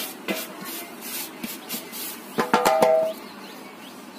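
A hand scrapes flour off a metal bowl into a metal cooking pot in a few faint strokes. About two and a half seconds in comes a quick run of sharp metal knocks with a ringing tone, as the bowl strikes the pot's rim.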